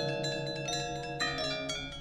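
Balinese bronze gamelan ringing: struck bronze metallophones and gongs sustain and slowly fade, with a few soft new strikes and a low tone that pulses evenly underneath.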